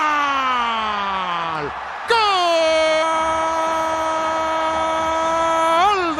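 A football commentator's drawn-out goal cry in Spanish: a long shouted note falling in pitch for nearly two seconds, then after a short break a single note held steady for almost four seconds, rising sharply right at the end.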